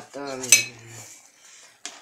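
A metal spoon clinks against the metal soup pot: one sharp, loud clink about half a second in and a lighter one near the end, as the soup is stirred.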